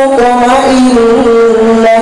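A young man chanting an Arabic prayer into a handheld microphone, holding long melodic notes that glide slowly between pitches.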